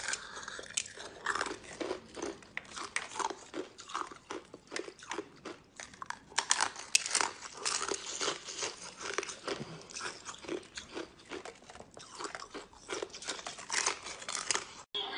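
Ice being bitten and chewed: a continuous, uneven run of crunches, several a second.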